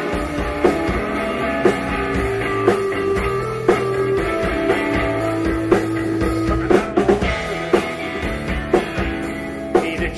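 Live rock trio playing an instrumental passage: electric guitar holding sustained notes over bass guitar and drum kit, with sharp drum accents about once a second.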